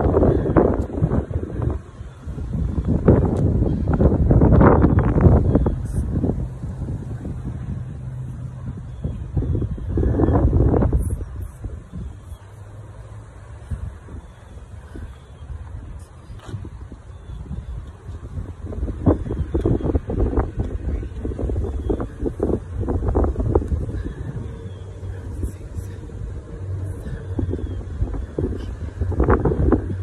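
Wind buffeting a phone's microphone in gusts, a low rumble that surges and fades, strongest about three to six seconds in and again around ten seconds.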